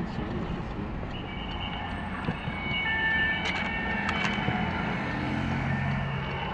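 Traffic noise heard from inside a car's cabin: a low, steady rumble of engine and road. From about a second in, several steady high-pitched tones from the surrounding traffic are layered over it and hold for several seconds.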